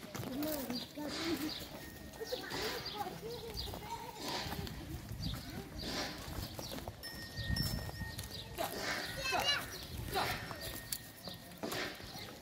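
A herd of zebu cattle walking on a dirt lane, with the steady clop and shuffle of many hooves and people's voices over it.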